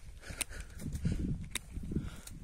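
Hand pruning shears snipping twice, two sharp clicks about a second apart, over rustling handling noise.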